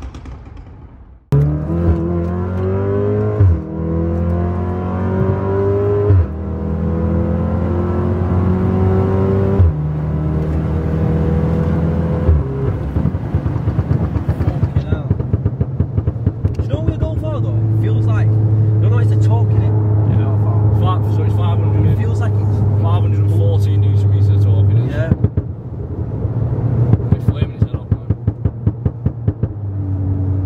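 Stage 1 tuned Mk7 Golf R's turbocharged 2.0-litre four-cylinder, with a decatted downpipe and cat-back exhaust, heard from inside the cabin accelerating hard: the engine note climbs steeply and drops at each of four quick gear changes in the first twelve seconds or so. It then settles to a steady cruise.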